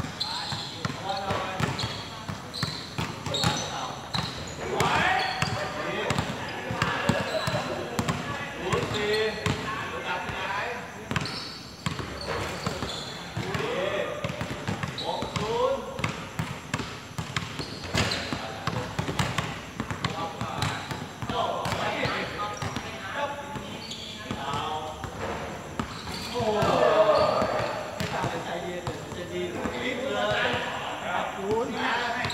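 A basketball bouncing on a hard court as it is dribbled and played, making repeated thuds throughout, with players shouting to each other, loudest a little before the end.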